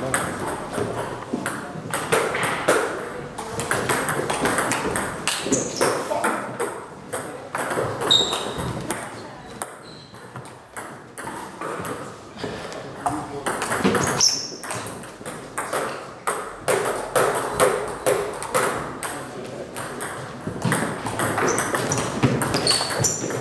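Table tennis ball clicking off bats and table in repeated back-and-forth strokes of rallies, with people talking in the background.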